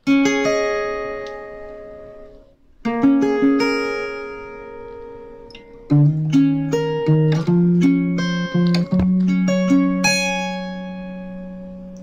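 Acoustic guitar with a capo, fingerpicked: single notes plucked in an arpeggio pattern and left to ring, with a brief pause near the 3-second mark and lower bass notes joining from about halfway, the last notes fading out.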